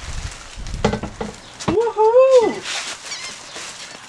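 Knocks and rustling of plastic wrap as a plastic-covered folding bench seat is handled on its steel base, with a sharp click just before the middle and a short high-pitched tone that rises and falls right after it.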